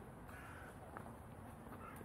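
Faint crow cawing: two short calls about a second apart, over a steady low rumble.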